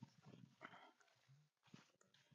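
Near silence, with faint irregular footsteps and rustling of tall grass as someone walks through it.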